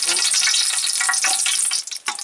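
Dried red chillies sizzling and crackling in hot oil in an aluminium pot, a steady dense crackle.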